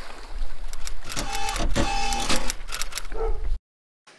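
Water splashing and churning in a lake, with wind rumbling on the microphone. The sound cuts off suddenly near the end.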